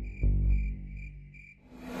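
Low droning documentary score with a deep hit about a fifth of a second in, under a cricket chirping about twice a second. The chirps stop around three quarters of the way through, and a rising whoosh swells near the end.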